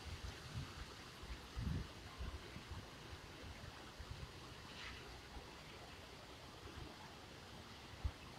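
Faint outdoor background: a steady hiss with irregular low rumbles of wind buffeting the microphone.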